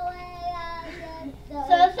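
Young child singing a made-up song: one long held note, then a new sung phrase begins near the end.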